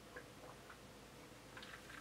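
Near silence, with a few faint, small clicks scattered through it.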